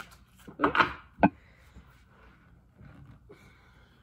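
A single sharp knock about a second in, just after a spoken "oops", as a tarot card is drawn. Faint rustling of cards being handled follows near the end.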